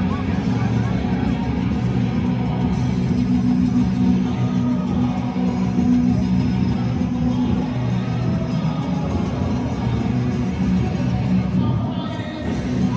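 Music playing over a football stadium's sound system, mixed with the noise of a large crowd in the stands, heard from among the spectators as the teams line up before kickoff. The sound is loud and steady throughout.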